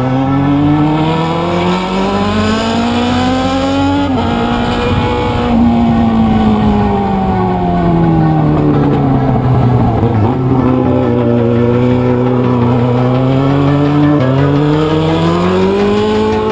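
Yamaha motorcycle engine heard from onboard while riding, its pitch rising under acceleration, falling as the bike slows about six to ten seconds in, then rising again. Abrupt pitch steps at gear changes come about four seconds in and again about fourteen seconds in.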